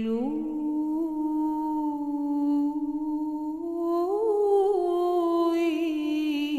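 Solo female voice singing a Byzantine chant terirem in plagal second mode, without words on a held vowel or hum. One long held note steps up just after the start, turns through a short ornament about two-thirds of the way in, then wavers near the end.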